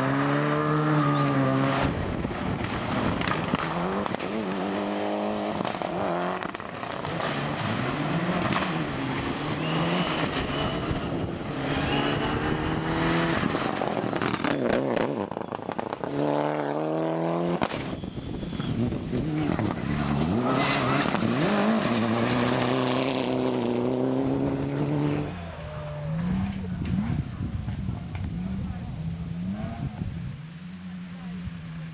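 Rally car engines revving hard as several cars pass one after another on wet tarmac, the pitch climbing and dropping repeatedly through gear changes and throttle lifts. The first car is a Honda Civic hatchback accelerating away.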